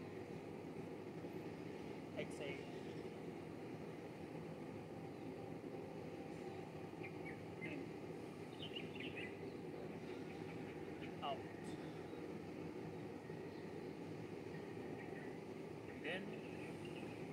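Steady outdoor background noise with a few short, faint high chirps scattered through it, one of them a brief rising chirp about eleven seconds in.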